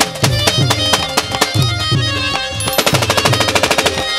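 Pashto folk music with tabla and keyboard, then about two-thirds of the way in a rapid burst of automatic fire from a Kalashnikov-type rifle, about a dozen shots a second for roughly a second, over the music.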